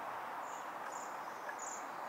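Waxwings giving short, high trilling calls, three in quick succession, over a steady background hiss.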